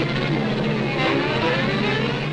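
Cartoon wind sound effect, a steady rush of air noise, over sustained orchestral notes.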